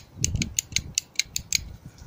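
Boot lock latch mechanism from a Suzuki Alto clicking as it is worked by hand, a quick, even run of light clicks about six a second. Low wind rumble on the microphone underneath.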